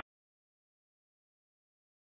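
Silence: a gap between air traffic control radio transmissions.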